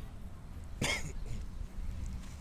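A single short cough about a second in, over a low steady rumble.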